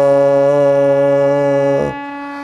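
A harmonium holding one steady note (Sa) while a man sings a long, steady 'saa' on the same pitch, matching his voice to the reed. The sung note stops near the end, leaving the harmonium note sounding more quietly.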